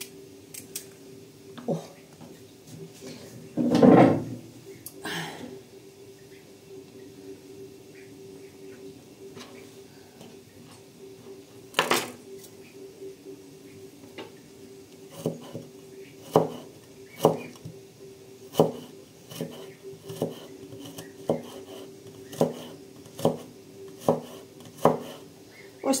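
Large curved-blade knife chopping carrot slices into thin strips on a wooden cutting board: sharp knocks, roughly one a second, through the second half. A louder brief noise comes about four seconds in, over a steady low hum.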